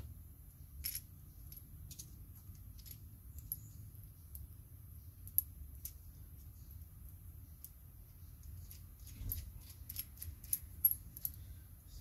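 Faint, scattered clicks and clinks of small metal brake master cylinder parts (the pushrod, lever and lock nut) being picked up and handled, over a low steady hum.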